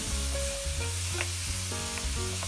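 Bok choy and garlic sizzling in butter and oil in a nonstick wok, stirred with a spatula that now and then knocks against the pan, over background music.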